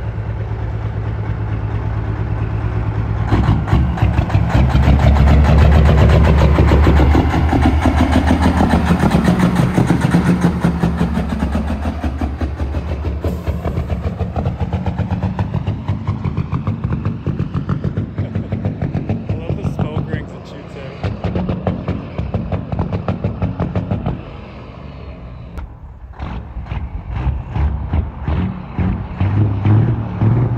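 Big-rig diesel engine of a heavily modified Peterbilt semi tractor, built for about 1500 wheel horsepower, revving and pulling hard through open stacks. Its pitch rises and falls as it drives off and turns. It goes quieter about three quarters of the way through, then builds again near the end as it comes back under heavy throttle.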